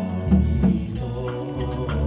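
Buddhist funeral chanting: voices intoning a sutra over a regular beat of struck percussion, about three strikes a second.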